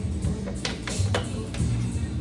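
Background music with a steady low beat, with a few light clicks.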